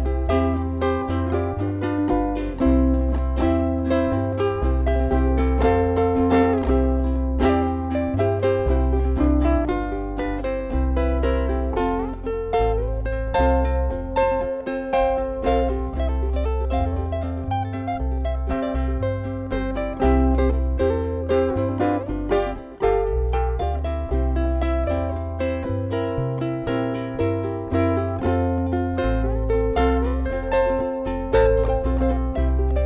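Ukulele played as an instrumental with fast plucked notes and chords, over a low bass part that repeats underneath.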